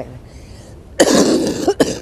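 A woman coughing: one loud cough about a second in, followed by a shorter second cough.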